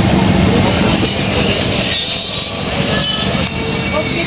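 Steady, loud rumble of motorcycle engines from passing rally traffic, with no single event standing out.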